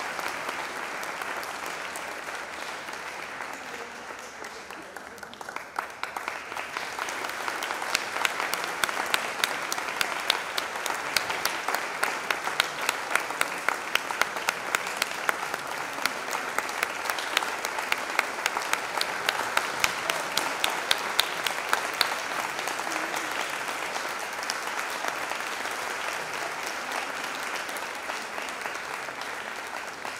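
Audience applauding, the clapping swelling about six seconds in with sharp individual claps standing out, then easing off toward the end.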